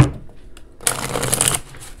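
A deck of oracle cards being shuffled: a sharp tap at the start, then a brisk burst of cards riffling for under a second around the middle.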